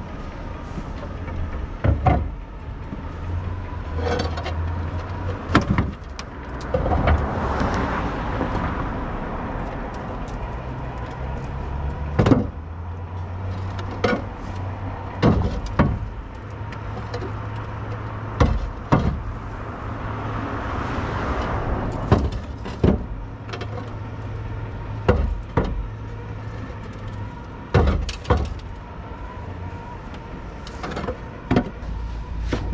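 Roof tiles clacking and knocking against each other as they are lifted and stacked in a pickup's bed, a sharp knock every second or two. A car goes by on the street twice.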